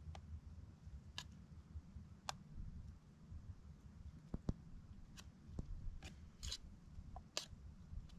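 A spoon clicking and scraping against a metal pot during a meal: scattered faint clicks at irregular intervals, over a low steady rumble.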